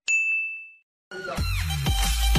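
A single bright ding, an editing sound-effect chime that rings out and fades within about a second. Electronic outro music with a steady beat starts just after a second in.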